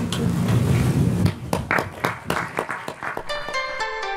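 An audience applauding, with irregular claps, then outro music with sustained notes coming in about three seconds in.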